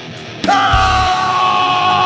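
Heavy rock music: a swell builds, then about half a second in the full band crashes in with a long, loud yelled vocal note held over it.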